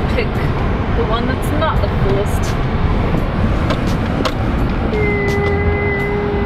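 Inside a vehicle cabin as it rolls slowly over a snow-packed lot: a steady low rumble of engine and tyres. A steady high-pitched tone sounds for under two seconds near the end.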